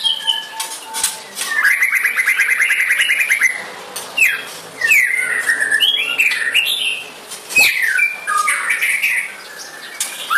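White-rumped shama singing. It opens with a fast rattling trill held for about two seconds, then runs into a string of short slurred whistles, some falling and some rising in pitch.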